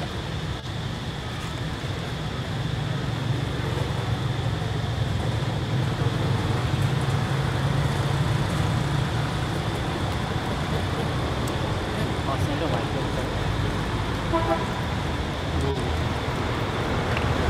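A steady low motor-vehicle rumble that grows louder a few seconds in, with faint voices and a brief toot near the end.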